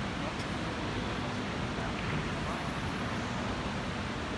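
Steady hall background noise with a low murmur of voices, and a faint click about half a second in.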